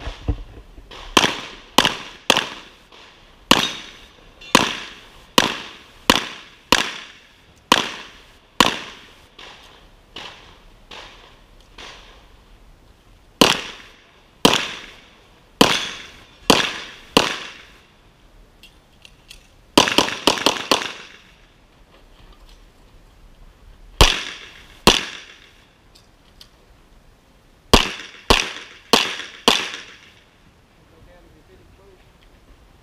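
Springfield XD(M) 5.25 semi-automatic pistol firing a stage string, the shots coming mostly in quick pairs with pauses of a second or more between groups. There is a lull of a few seconds about ten seconds in and a rapid burst of several shots near twenty seconds. Each shot is a sharp crack followed by a brief echo off the range walls.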